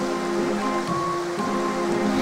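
Background music with slow, held notes, over a steady rush of stream water.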